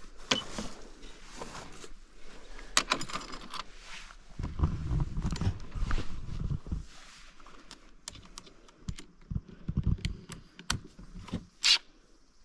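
Scattered light clicks and clinks of small metal tool parts, sockets, bolts and a cordless impact driver, being handled and set down, with a stretch of low rumbling about four to seven seconds in.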